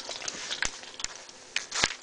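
Gear being handled on plastic sheeting: several short knocks and clicks as items are shifted and a large knife is picked up, the last two close together near the end.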